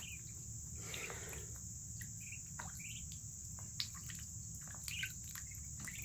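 Muscovy ducklings peeping softly a few times while paddling in a shallow bowl of water, over a steady high-pitched background trill.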